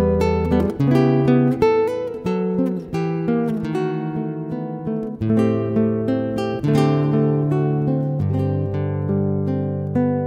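Solo classical guitar playing a slow, romantic-style piece: a singing melody of plucked notes over held bass notes and chords that mix jazzy harmonies with plain major and minor chords.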